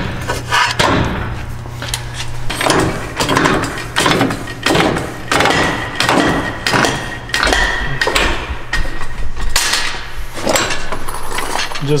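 Repeated metal clanks and knocks of suspension parts and bolts being worked into place while the lower strut bolts of a lifted front strut assembly are started.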